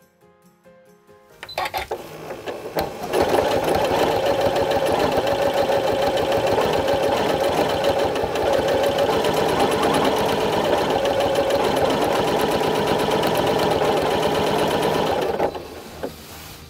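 Janome Continental M8 sewing machine free-motion quilting with the Accurate Stitch Regulator foot. A few stitches start about a second and a half in, then it runs steadily at speed and stops just before the end; its stitch speed follows the movement of the fabric under the regulator's sensor.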